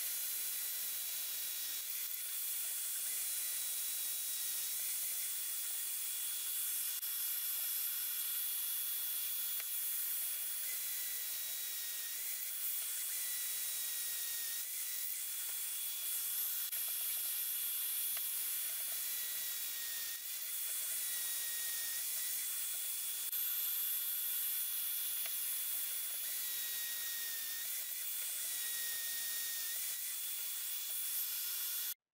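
A cordless drill's motor whines in several spells of a few seconds as a stepped pocket-hole bit bores through the jig's guide into the wood, over a steady high hiss with a constant thin whine.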